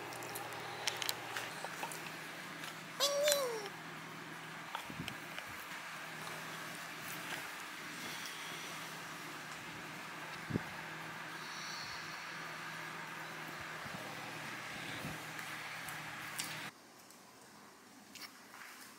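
Room tone with a steady background hiss, a short voice-like sound falling in pitch about three seconds in, and a few faint clicks; the background drops quieter near the end.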